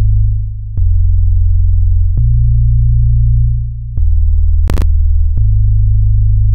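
Deep, sine-like synthesized bass playing a slow melodic line of held notes, about one and a half seconds each, with a click at the start of each new note. A brief noisy crackle comes near the end.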